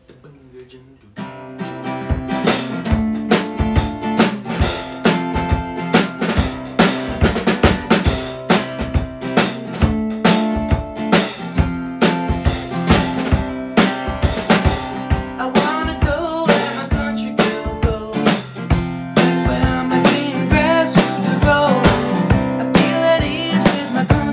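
A song starting up about a second in on acoustic guitar and a small drum kit of snare, bass drum and cymbal, played with sticks to a steady beat. A harmonica melody comes in over it in the second half.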